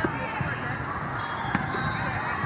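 A volleyball being struck during a rally: a sharp smack right at the start and another, louder one about a second and a half in. Both are heard over a steady babble of voices and calls from the crowded hall.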